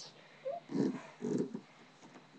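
A girl's short, soft vocal sounds: a quiet 'mm' and a couple of brief murmurs, like playful noises made for a toy animal.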